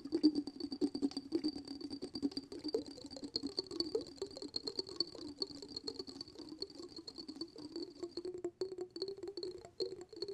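Fingertips and fingernails tapping quickly and lightly on a small glass jar filled with sparkly water, making a continuous patter of small clicks.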